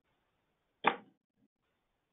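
A single short, sudden noise a little under a second in, heard over a narrow-band webinar audio line; otherwise near silence.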